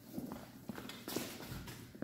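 Footsteps of hard-soled shoes on a tiled floor, a few light irregular knocks as a person walks past close by.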